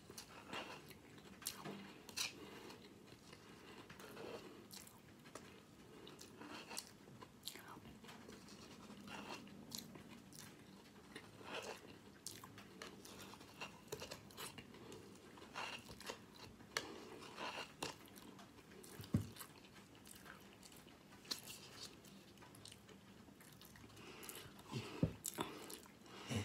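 Faint, irregular crunching of cereal soaked in water being chewed close to the microphone, with small crackles scattered throughout.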